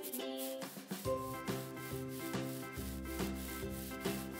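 Instrumental children's background music with a steady beat and a bass line that comes in about a second in.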